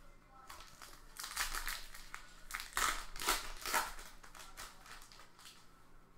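Foil wrapper of a trading card pack crinkling in a run of short crackles as it is handled and torn open, busiest from about a second in to the fourth second.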